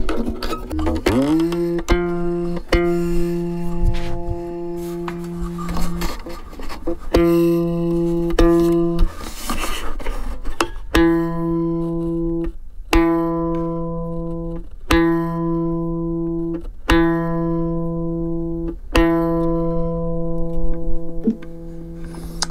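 A violin string played with the fingers, its bridge just broken. About a second in, a note slides up to a low pitch, and the same low note is then plucked again and again, each note lasting about two seconds.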